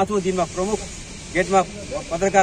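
A man's voice reading aloud from a prepared statement, with a brief pause about a second in.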